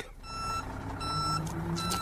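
Reversing alarm on a vehicle backing up, beeping about once every three-quarters of a second over the engine running.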